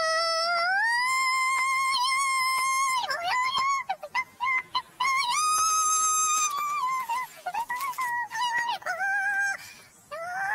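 Audio from a Skittles commercial warped by the 'G Major' pitch-shift effect into layered, sung-sounding tones. One long tone slides up in the first second and holds, a second held tone comes in the middle, and between them are short choppy fragments, with a rising slide near the end.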